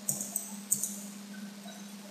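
A pause in speech: a steady low electrical hum from the recording setup, with two brief faint ticks near the start and under a second in.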